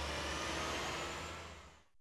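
A steady low hum with a hiss over it, fading out to near silence in the last half second.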